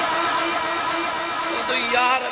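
A man's voice held in a long, wavering, sung-out call without clear words, carried through a loudspeaker system and fading near the end.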